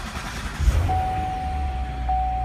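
Chevrolet Corvette Stingray's 6.2-litre LT1 V8 starting from inside the cabin: it catches suddenly about half a second in, then settles into a steady low idle. A steady high electronic tone sounds alongside from about a second in.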